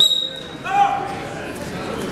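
A referee's whistle: one short, steady, shrill blast of about half a second, signalling the wrestlers to start from the referee's position. A voice shouts just after it.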